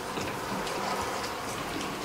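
Faint rustling and soft scattered ticks of Bible pages being turned in a hall, over a low steady room hum.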